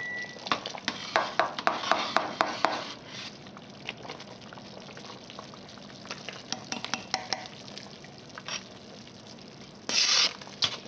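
A spoon stirring thick gumbo in a stainless steel pot, scraping and clicking against the pot. The stirring is busiest in the first three seconds, then turns to a few scattered clicks over the gumbo simmering on the stove. The filé powder is being stirred in so it doesn't lump.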